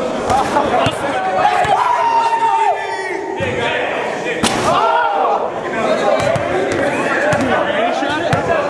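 A crowd of young men shouting and calling out in a gym, with one long drawn-out shout about two seconds in. About four and a half seconds in there is a single loud bang, a basketball hitting the basket on a half-court shot, followed by more shouting.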